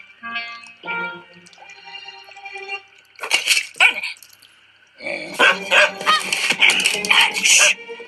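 Cartoon film soundtrack: light music with held notes, then a small cartoon dog barking, in a couple of short bursts about three seconds in and again in a busy run from about five seconds in until near the end.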